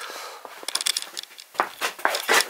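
Light clicks, scrapes and rustling in a small room, clustered from about half a second to a second in, with a few more near the end.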